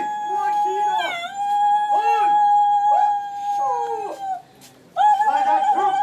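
A group of voices chanting a traditional Naga festival song, holding one long high note. Shorter rising-and-falling calls sound over the held note. The chant breaks off briefly about four and a half seconds in, then resumes with a wavering pitch.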